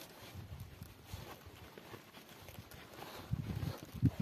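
Canvas tent door flap and its cord ties being handled and tugged: irregular soft rustles and dull thumps, louder near the end.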